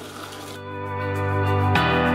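Background music: a soft instrumental piece of held, sustained notes that swells in about half a second in and shifts to a new chord near the end.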